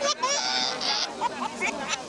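Young child crying and screaming at a vaccination jab, with a loud wail in the first second and then weaker sobs over crowd chatter.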